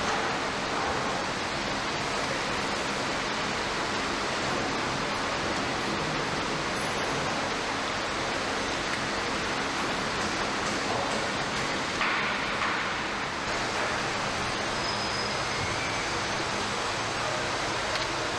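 Steady background din of a car assembly hall: an even hiss-like noise with a faint low machine hum underneath, and a brief louder sound about twelve seconds in.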